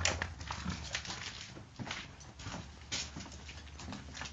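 Footsteps of several people walking over a hard floor: irregular taps and scuffs a few times a second, over a steady low hum.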